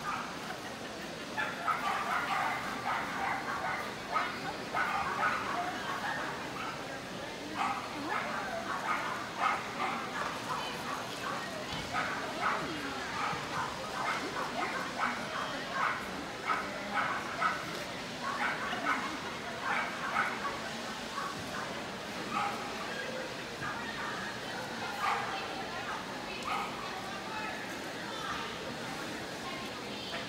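Dogs barking and yipping repeatedly in many short barks throughout, over background chatter of people.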